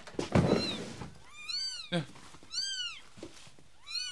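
A wooden drawer scraping open, then kittens mewing inside it: three high calls, each rising and falling.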